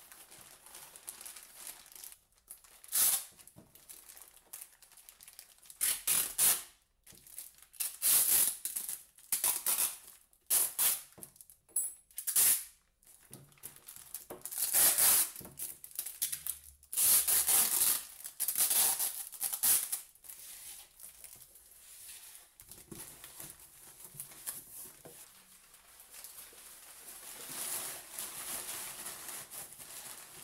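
Brown packing tape pulled off its roll in a run of short, loud screeching strips and wound around a plastic-bagged parcel, with the plastic bag crinkling between pulls. Near the end a softer rustle of crumpled paper padding being pushed into a cardboard box.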